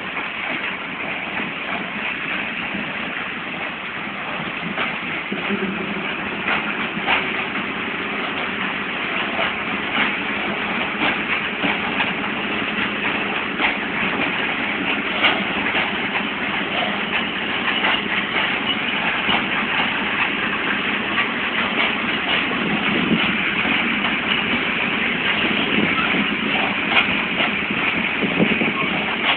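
Open-top freight coal wagons rolling past, their steel wheels clattering and clicking irregularly on the rails, growing a little louder over time.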